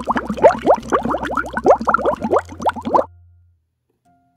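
Cartoon underwater bubbling sound effect: a quick run of rising 'bloop' plops, about six a second, that stops abruptly about three seconds in.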